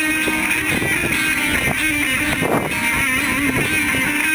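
Amplified electric guitar playing a Latin groove through a looper and delay effects, with sustained looped notes under freshly plucked ones.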